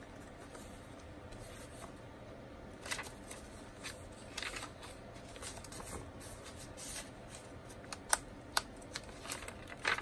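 Paper pages and tucked-in tags of a handmade junk journal being turned and handled: soft, scattered rustles with a few short, sharp ticks in the second half.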